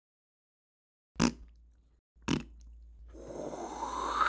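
Title-card sound effects: two sharp hits about a second apart, then a noisy whoosh rising in pitch and growing louder.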